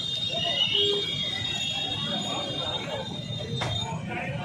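A high, steady tone, alarm-like, holds until near the end and stops with a sharp click, over voices and street crowd noise.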